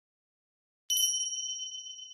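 A bright bell-like chime sound effect, struck once about a second in and then ringing out in a slow fade. It plays as the intro sting over the title card.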